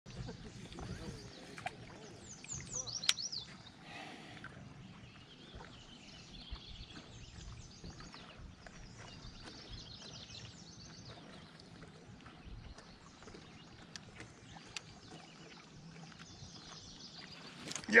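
Birds chirping and singing faintly in the shoreline trees over quiet open-air background noise, with a few light clicks, the sharpest about three seconds in.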